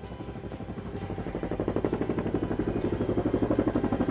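Navy Seahawk helicopter hovering low over a flight deck with an underslung supply load, its rotor beating in a rapid, even pulse that grows louder.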